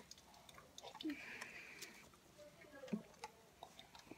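Faint sounds of lemonade being drunk from a plastic cup: quiet gulps and a few small clicks.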